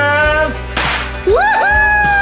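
A handheld confetti cannon going off with one short burst about a second in. Children shout and scream with excitement around it, with a high cry rising and then held near the end.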